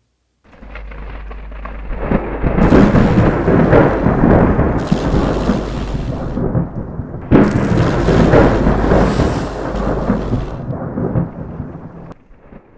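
Loud rumbling roar of an outro logo sound effect, building up over the first two seconds, with a sudden sharp burst about seven seconds in and fading away near the end.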